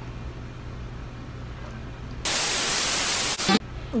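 Loud white-noise static that cuts in abruptly about two seconds in and cuts off just as abruptly a little over a second later. Before it there is a quieter stretch with a low steady hum.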